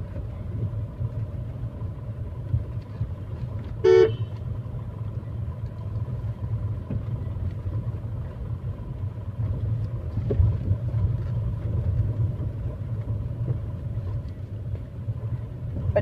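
Steady low rumble of a Tata Tigor car running in second gear, heard from inside the cabin. A car horn toots once, briefly, about four seconds in.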